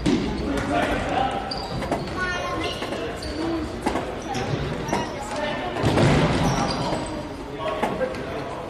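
Indoor futsal play in an echoing sports hall: a ball being kicked and bouncing with sharp thuds, players' voices calling out, and short high squeaks of shoes on the court floor.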